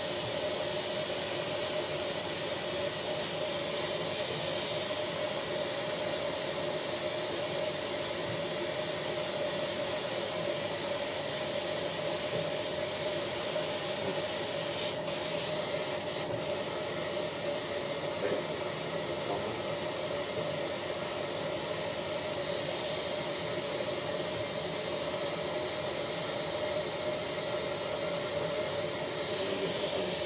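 Dental suction running with a steady hiss and a steady mid-pitched whine. Two faint clicks come a little past the middle.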